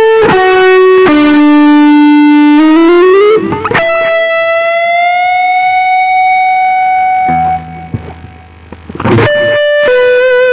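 Gibson Flying V electric guitar through distortion, playing a slow single-note lead line in B minor. Held notes give way to a slide upward about three seconds in and a long sustained note that bends slowly upward and fades; new notes with vibrato come in near the end.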